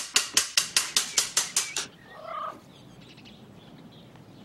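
A man laughing heartily: a rapid run of 'ha' bursts, about six a second, that stops about two seconds in. After that there is only faint background.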